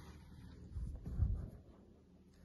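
Handling noise from sewing a crocheted plush toy: a needle and yarn being drawn through chenille stitches, with the fabric rubbing under the fingers. There is a low thump of handling about a second in.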